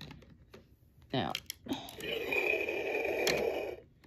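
Liger Zero Midnight Shield electronic action figure playing a built-in sound effect through its small speaker for about two seconds, cutting off abruptly, after a few clicks of it being handled.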